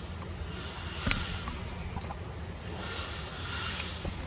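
Outdoor ambience: a steady low wind rumble on the microphone, with a high buzzing hiss that swells and fades near the end, and one sharp click about a second in.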